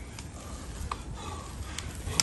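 Cyclocross bike riding past on a wet, muddy dirt track: a faint rolling noise of tyres in mud with a few light clicks.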